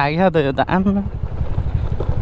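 Small scooter engine running at low road speed, an even, rapid low pulsing that is heard alone for the second half.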